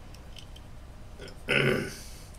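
A single short, low, throaty sound from a person's voice, about one and a half seconds in, over faint room tone.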